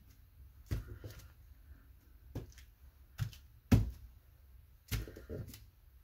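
An inked clear stamp pressed and tapped by hand onto journal paper on a cutting mat: about seven short, soft knocks at an uneven pace, the loudest a little under four seconds in.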